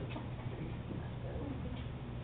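Quiet room tone during a pause in speech: a steady low hum under faint scattered noise.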